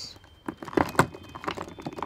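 A small cardboard makeup box being pushed into a drawer crowded with lipstick tubes: a string of light, irregular clicks and taps as it knocks against the tubes and the grid organizer, starting about half a second in.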